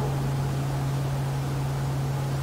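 A steady low hum under an even hiss, with no other event: the room tone of the recording.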